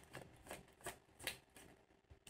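A tarot card deck being shuffled from hand to hand, giving faint, soft card flicks about every 0.4 seconds.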